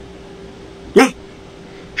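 A pause in a man's speech: faint background hiss with a thin steady hum, broken about a second in by one short spoken syllable.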